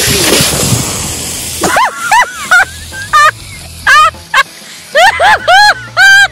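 Pressurized water bursting from an RV water heater's anode rod port as the rod is unscrewed without relieving the tank pressure: a loud hissing spray lasting about a second and a half. It is followed by a string of short, high-pitched cries.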